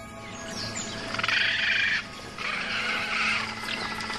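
Bird calls in two dense, chattering bursts, one about a second in and one just before the end, over a steady music bed.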